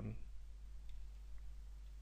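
A few faint, sparse computer keyboard key clicks as a word is typed, over a steady low hum.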